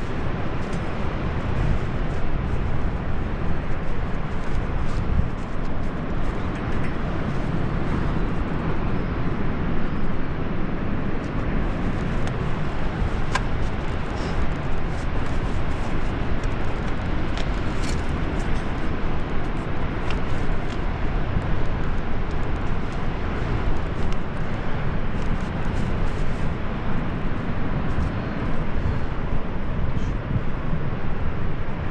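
Wind buffeting the camera microphone, a steady low rumbling rush that rises and falls unevenly. A few light clicks come from climbing gear being handled.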